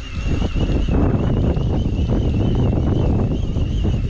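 Wind buffeting the microphone over the low, steady running of a boat's outboard motor at trolling speed, with a thin, wavering high whine over it.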